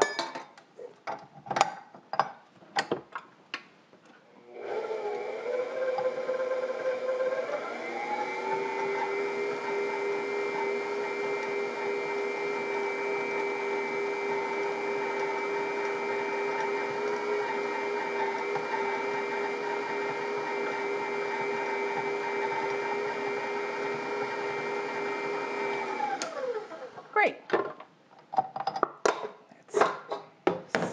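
Bowl-lift stand mixer's motor running with the flat beater creaming butter and confectioner's sugar: it starts about four seconds in, steps up to a higher pitch a few seconds later, holds steady, then winds down with a falling whine near the end. Metal clicks and knocks come before it starts and after it stops, as the beater is fitted and the bowl handled.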